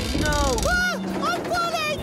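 A cartoon character's wordless cries, the pitch sliding up and down, over background music, with a low rumble under the first second.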